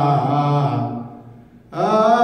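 Men chanting Ethiopian Orthodox liturgical chant (zema) in long held notes. The phrase falls and fades away about a second in, and after a brief pause the next phrase starts near the end.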